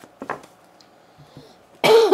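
A couple of faint ticks from oracle cards being handled, then near the end a short, sudden cough from the reader.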